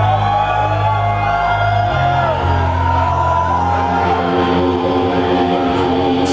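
Heavy metal band playing live: distorted electric guitars and bass hold sustained chords, the bass note changing about two seconds in, with gliding notes over the top and no drum beat.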